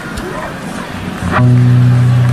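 Murmur of a concert audience talking, then about a second and a quarter in a loud, low note from the band's amplified instruments starts and holds steady.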